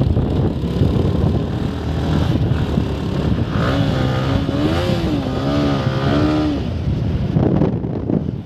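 Motorcycle engine running steadily while riding, with wind rushing over the microphone. In the middle, for about three seconds, a wavering voice-like tone rises and falls over the engine.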